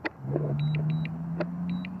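DJI Mini 3 Pro drone hovering just above the ground in a forced landing, its motors giving a steady low hum. Over it, the remote controller sounds high double warning beeps about once a second for critically low battery.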